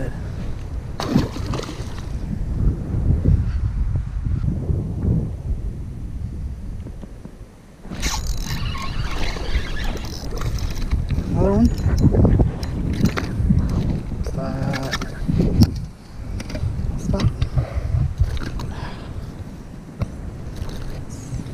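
Wind buffeting the microphone, a heavy low rumble that drops away briefly about eight seconds in and then resumes.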